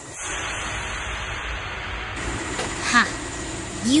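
A steady rushing hiss over a low rumble, machinery noise that sets in just after the start and runs on. A short rising voice-like sound comes about three seconds in.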